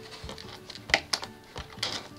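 Scissors snipping at doll-box packaging: a few sharp, separate clicks, the loudest about a second in.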